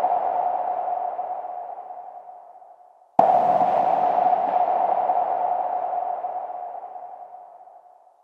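Electronic synthesized pulses in an industrial track's intro: a sudden mid-pitched tone with a hiss around it that slowly fades out. One fades away over the first three seconds, and a fresh one hits about three seconds in and fades to almost nothing near the end.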